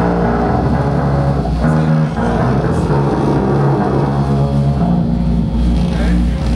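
Live rock band playing loud, with electric guitars and bass holding sustained notes that shift every half second or so.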